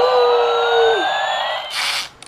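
Battery-operated bump-and-go toy airplane playing its electronic jet-engine sound effect: a steady hiss with a whine rising slowly in pitch. It cuts off suddenly near the end.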